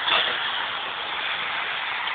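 Steady hiss of background noise with no clear events, the tail of a voice fading right at the start.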